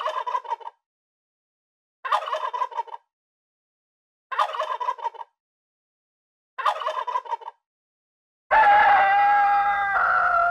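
A tom turkey gobbling four times, each gobble a rapid rattling burst about a second long, the gobbles about two seconds apart. Near the end a rooster starts a loud crow, held on a steady pitch.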